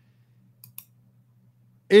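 A few soft clicks from a computer mouse, about two-thirds of a second in, over a faint steady low hum. A man's voice comes in at the very end.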